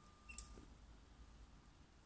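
Near silence, with one short faint click about half a second in.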